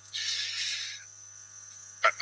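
A breath into the lecturer's microphone lasting just under a second, followed by a pause, over a steady low mains hum.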